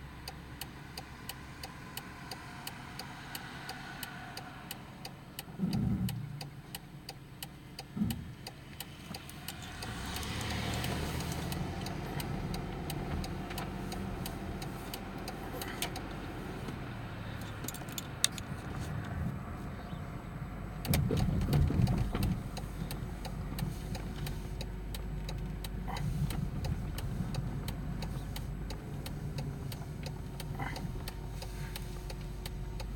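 Engine and road noise of a moving car heard from inside the cabin, a steady low rumble. There are brief knocks about six and eight seconds in, and a louder rumble about twenty-one seconds in.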